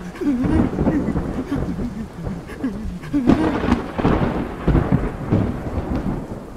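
Thunderstorm sound effect, rumbling thunder with rain, with low wavering tones running through it.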